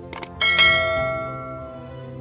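Subscribe-animation sound effect: quick mouse clicks, then a single bright notification-bell ding that rings and fades over about a second and a half, over soft background music.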